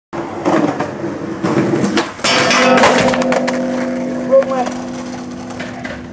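Skateboard rolling with a few knocks, then about two seconds in a loud crash against the metal stair handrail, which rings on with a steady tone that fades slowly. A short shout comes partway through the ringing.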